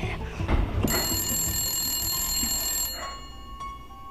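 A brief rough noise in the first second gives way to a telephone bell ringing steadily for about two seconds. The ring cuts off sharply, and a few soft, separate plucked music notes follow.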